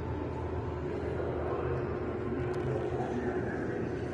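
Steady low rumble of background room noise in a large exhibit hall, with a faint steady hum.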